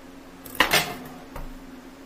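A kitchen knife clattering down onto a countertop about half a second in, followed by a smaller knock a moment later.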